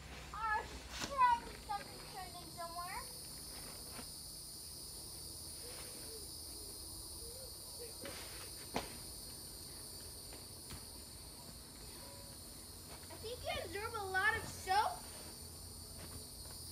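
A steady, high-pitched chorus of insects drones without a break. Over it, a young child gives high-pitched calls and squeals, once in the first few seconds and again near the end.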